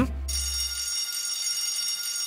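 Electric school bell ringing steadily, a cartoon sound effect. It starts about a quarter second in and keeps ringing.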